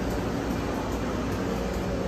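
Steady indoor background noise with a low hum, like ventilation in a large lobby, with no distinct events.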